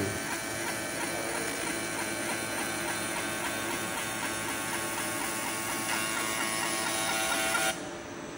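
Mirror laser engraving machine running while it etches the paint backing off a mirror: a steady electrical buzz with several fixed tones and an even, rapid ticking pattern from the moving scanning head. The sound stops abruptly shortly before the end.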